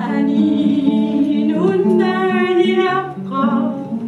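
Live singing with acoustic guitar accompaniment: a voice holds long, wavering notes over steady low guitar notes.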